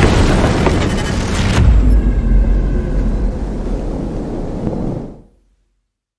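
Cinematic boom sound effect of a bullet striking a wall: a sharp hit with a heavy, deep rumble that slowly dies away and cuts out to silence about five seconds in.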